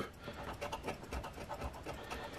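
A flat scraper rubbing the coating off a scratch-off lottery ticket in quick, uneven strokes, soft and scratchy.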